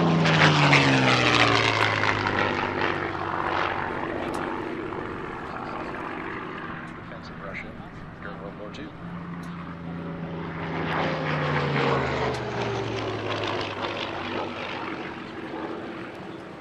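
P-51D Mustang's Merlin V-12 engine and propeller passing low and loud, the engine note dropping in pitch as it goes by. About ten seconds later a second piston fighter pass swells in and falls in pitch the same way.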